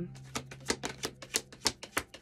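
A tarot deck being shuffled by hand, the cards clicking in a quick, even rhythm of about five or six a second.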